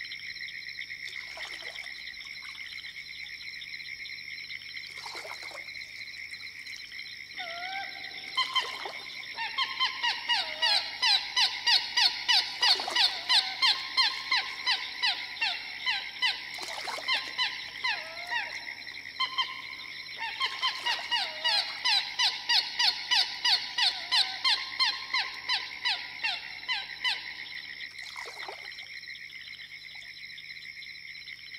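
Field recording of a Florida swamp in the early morning: a steady, high-pitched chorus of frogs and insects, with a loud pulsing call repeating about three times a second in two runs of several seconds each.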